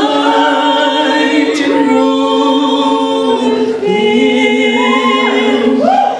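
Two women singing a slow duet into microphones, holding long sustained notes that change pitch every second or two, with a wavering note near the end.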